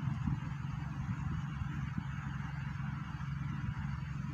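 Steady low hum with a fainter hiss above it, running evenly without distinct events.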